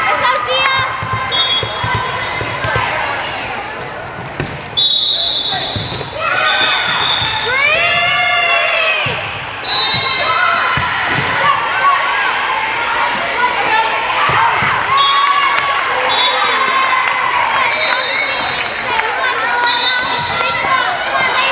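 Volleyball game sounds in a large gym hall: sneakers squeaking on the sport court, the ball being struck, and players' and spectators' voices, with a jump in loudness about five seconds in.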